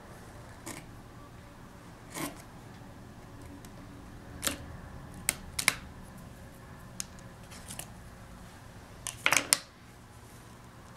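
A small metal hand tool nicking and scraping the edge of a thin wax feather on a wooden cutting board as imperfections are cut into it. Scattered short clicks and scrapes, with the loudest cluster of several near the end, over a low steady hum.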